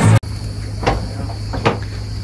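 Bar music and crowd noise cut off suddenly at the start. Then comes a steady high drone of cicadas over a low hum, with two footsteps in flip-flops on a wooden boardwalk, about a second apart.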